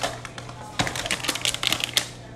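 Gift bag and tissue paper crinkling and rustling as a present is pulled out. It starts as a quick run of crackles a little under a second in.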